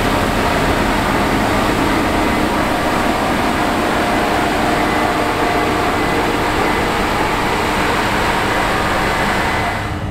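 Case IH 8250 Axial-Flow combine harvesting wheat at close range: a loud, steady din of engine and threshing machinery, with a faint steady whine running through it.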